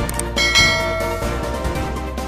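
A bright bell chime sound effect rings about half a second in and fades over about a second, over steady background music; two short clicks come just before it.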